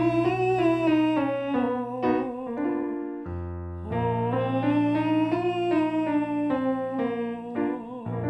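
A man singing a falsetto vocal exercise over piano: a short sung phrase that climbs and comes back down, done twice, each time after a piano chord is struck and held beneath it.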